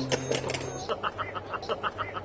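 Background music that cuts off just under a second in, followed by a person laughing in quick, even bursts, about five a second.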